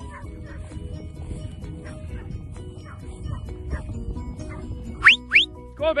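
Faint background music over wind rumble on the microphone, then about five seconds in two short, sharp rising whistle blasts from the handler commanding a working sheepdog, followed at the very end by a shouted "Go".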